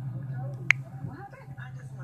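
A single sharp click a little after half a second in, over faint background talk and a steady low hum.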